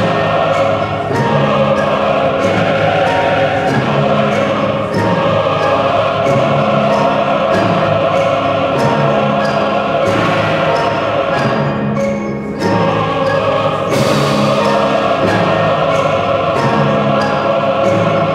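A choir and orchestra performing a stately maestoso passage. The choir holds long, full chords over regular percussion strokes about twice a second, with a brief lull about twelve seconds in.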